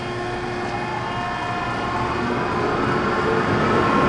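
Automatic brushed car wash equipment running: a steady mechanical hum of motors and pumps over a wash of spraying water, slowly growing louder, with a faint rising whine over the last couple of seconds.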